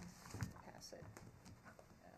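Faint room sound of a meeting chamber: low, off-microphone voices, with a single soft knock about half a second in.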